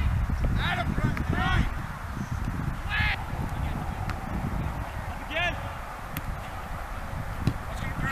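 Distant, wordless shouted calls from people around a soccer field: a few short high-pitched shouts in the first second and a half, one about three seconds in and another around five and a half seconds, over a low, uneven rumble.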